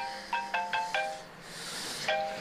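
Mobile phone ringing with a melodic ringtone: a quick run of about five short, clear notes, a brief pause, then the tune starting over.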